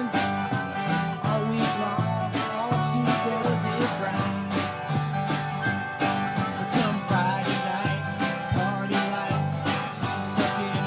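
Live country band playing an instrumental break: strummed acoustic guitars over electric bass and drums, with fiddle and harmonica carrying the melody.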